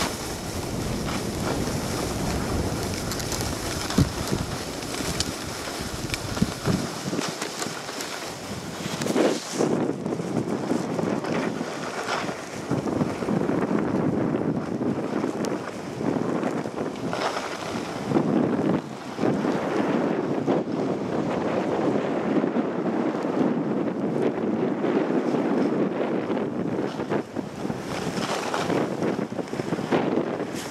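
Wind buffeting the microphone of a moving camera, with the steady hiss and scrape of snowblades and a snowboard sliding over packed snow. A heavy low rumble of wind for the first several seconds eases after about seven seconds, leaving mostly the sliding hiss with a few light knocks.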